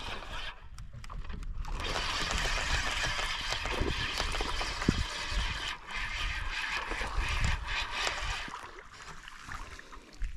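Spinning reel being wound, a steady whirring for several seconds as the line and lure are retrieved, stopping near the end, with a few light knocks against the wooden boat.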